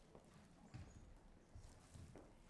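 Faint footsteps on a stage floor, with scattered light knocks, at a very low level.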